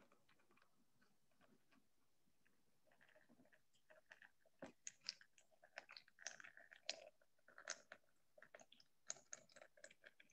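Mostly near silence; from about four seconds in, faint, irregular crinkles and clicks: handling noise as water is poured from a jar through a paper coffee filter set in a funnel.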